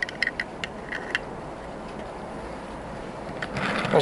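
Light plastic clicks and taps as a hand handles the removable canopy on a model hopper wagon, mostly in the first second, over a steady background hiss. A soft rushing sound comes in just before the end.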